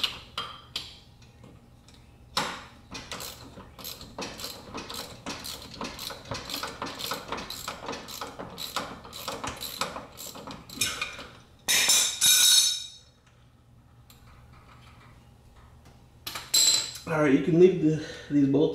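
Hand socket ratchet clicking in a long steady run as a freshly loosened bolt is spun out of the driveshaft's front flex-disc (guibo) joint. A short, loud metallic rattle comes about twelve seconds in.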